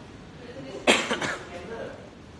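A loud cough close to the microphone about a second in, a sharp first burst followed by a couple of shorter ones, over quiet background chatter.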